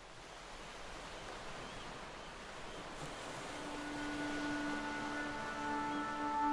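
Ocean ambience: a steady rushing wash that fades in and grows louder. About halfway through, held notes of ambient music come in over it.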